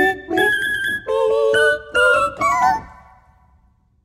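Keyboard playing a sampled human voice as sustained vocal-like chords, changing about every half second, with the last chord fading out to silence about three seconds in.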